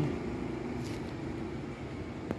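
Steady low background hum of distant road traffic, with no distinct events.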